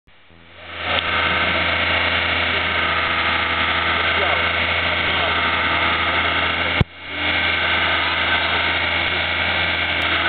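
Cars idling at a drag-race start line, a steady engine hum with voices of people talking over it. A sharp click comes about seven seconds in, after which the sound briefly drops away and comes back.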